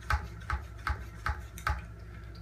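Hand pump spray bottle being pumped: a regular click with a dull thump on each stroke, about two and a half a second, five in all.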